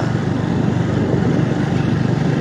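Motorbike engine running steadily while riding along a dirt track.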